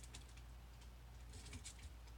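Faint, quick light clicks in two short clusters, one at the start and another about a second and a half in, over a low steady hum.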